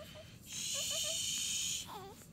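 Newborn babies making short squeaky whimpers and grunts. A loud steady hiss runs over them from about half a second in until near the end.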